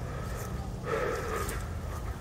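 Low rumble of a handheld camera being carried on a walk, with a faint short sound about a second in.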